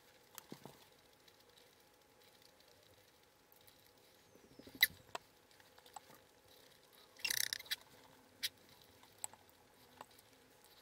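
Eating sounds: a wooden spoon and chopsticks clicking and scraping against a ceramic bowl, with one sharper knock about five seconds in and a short noisy burst a couple of seconds later.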